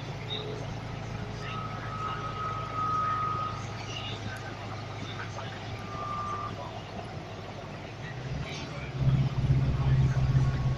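Volvo B5TL double-decker bus's four-cylinder diesel engine running with a steady low hum, heard from the upper deck while the bus is moving. The engine note grows clearly louder about eight and a half seconds in as it pulls harder.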